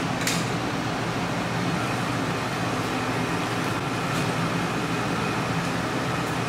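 A steady mechanical hum, with a single click about a quarter of a second in.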